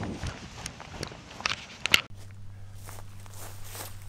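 Footsteps swishing through grass for about two seconds, ending in a sharp knock. Then the sound changes abruptly to a quieter background with a steady low hum.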